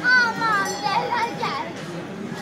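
A child's high-pitched shout, falling in pitch, right at the start, followed by chattering voices.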